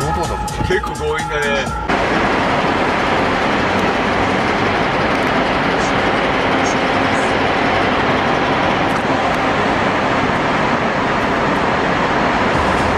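Music breaks off about two seconds in, giving way to a steady, loud rush of road and traffic noise inside a road tunnel, heard from a car crawling in a traffic jam.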